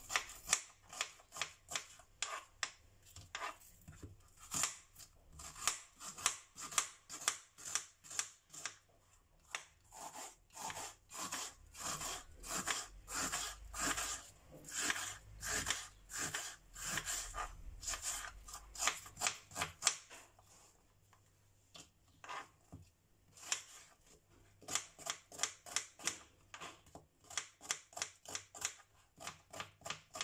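A knife dicing an onion on a plastic cutting board: the blade taps the board steadily about twice a second, stops for a couple of seconds about two-thirds through, then comes back in quicker taps near the end.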